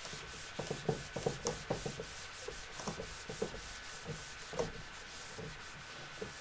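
Handheld whiteboard eraser rubbing across a whiteboard in a run of quick, irregular wiping strokes, clearing off marker writing.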